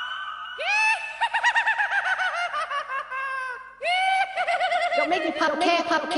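Background music: after a brief held note, a high melodic line of fast warbling notes rises and falls several times a second, with a short break just before 4 seconds in.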